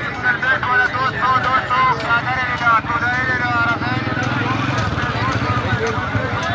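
Market bustle: several people talking close by. A motorcycle engine runs through the middle, fading out near the end.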